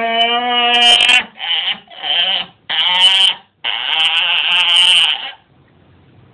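A person yelling loudly without words in five drawn-out cries: the first carries on for about a second, the next three are short, and the last lasts over a second before it breaks off abruptly about five seconds in.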